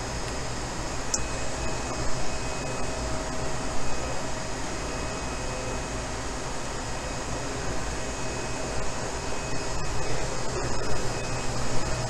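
Steady hum and air noise of running machinery and ventilation in a filament production workshop, with a few faint steady whining tones over it.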